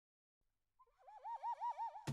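A warbling, whistle-like tone that wavers up and down about five times a second, starting about a second in.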